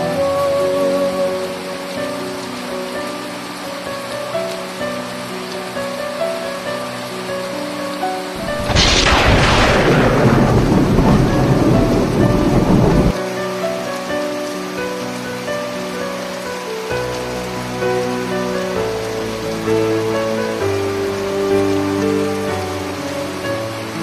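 Heavy rain pouring steadily onto tree foliage, under soft melodic background music. About eight and a half seconds in, a loud thunderclap rumbles for about four seconds and then cuts off suddenly.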